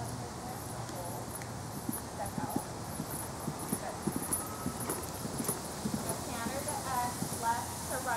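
Horse's hoofbeats on sand arena footing, a string of soft thuds that becomes distinct about two seconds in as the horse passes close by.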